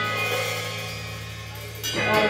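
Live rock band with electric guitar, bass and drum kit: a held chord rings out and fades, then a drum and cymbal hit just before the end brings the band back in.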